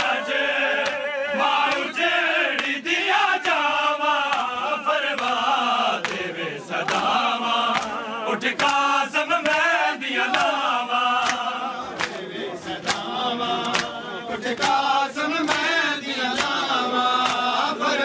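A group of men chanting a noha, a Shia lament for Muharram, in unison. Sharp slaps of hands on bare chests (matam) cut in repeatedly at an uneven beat.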